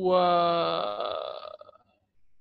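A man's drawn-out hesitation sound, a held "wa..." on one steady pitch that fades out after about a second and a half.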